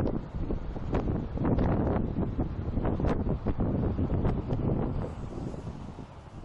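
Wind buffeting the microphone in irregular gusts over the low rumble of a car travelling on an expressway, fading away near the end.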